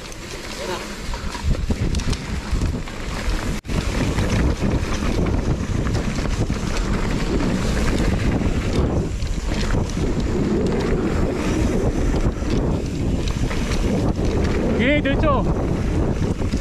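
Wind buffeting the microphone of a mountain bike's camera during a descent, mixed with tyre rumble and the bike rattling over a stony dirt trail. A rider's voice calls out near the end.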